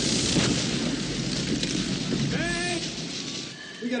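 Film sound of sparks spraying from electrical arcing: a loud hissing rush over a low rumble, easing off after about three seconds. A short high wail cuts through about two and a half seconds in.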